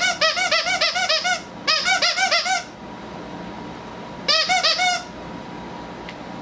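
Squeaker inside a plush dog toy squeaking rapidly as a dog bites down on it over and over, five or six squeaks a second, each one rising and falling in pitch. It comes in three bursts: one at the start, a second just after, and a short last one about four seconds in.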